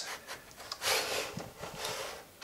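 Metal arm of a mechanical sand-drawing machine being moved by hand into a new position over its gears: a short rubbing scrape about a second in, then a few light clicks.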